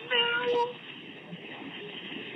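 A woman's brief high-pitched crying wail, about half a second long near the start, like a sob.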